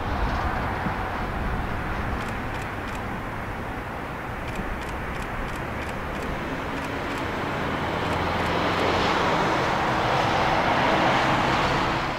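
Jet airliner engine noise: a steady rushing sound that swells louder over the last few seconds.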